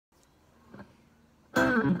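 Near silence for about a second and a half, then an electric guitar comes in suddenly and loudly with sustained, ringing notes.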